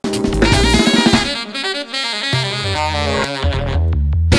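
Saxophone, drum kit and electric keyboard playing together, starting abruptly at the top of a take: a busy saxophone melody over drums and a bass line. The band drops out briefly just before the end.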